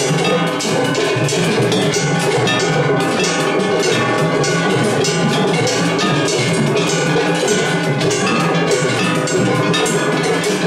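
Matsuri hayashi from several festival floats playing at once during a tatakiai drum contest. Taiko drums beat in dense, steady strokes under the constant clang of surigane hand gongs.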